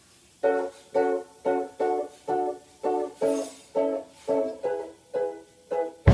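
Ukulele strumming a steady rhythm of chords, about two strums a second.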